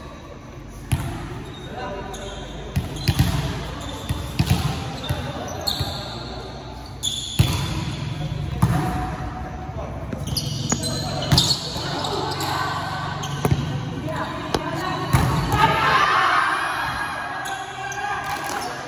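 Volleyball rally on an indoor court: a series of sharp smacks as the ball is served, passed, set and hit, echoing in the hall. Players shout and call between hits, louder near the end.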